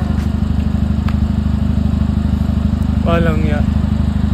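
A car engine idling steadily with a low, even drone.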